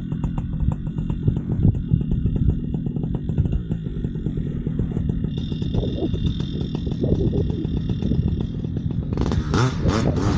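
Paramotor (powered paraglider) engine and propeller running at low throttle with a rapid low pulsing while the wing comes up overhead. About nine seconds in it is throttled up sharply to full power for the takeoff run.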